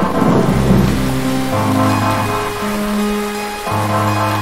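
A thunder rumble over steady rain, loudest in the first second and a half, as long held low synthesizer notes of music come in beneath it.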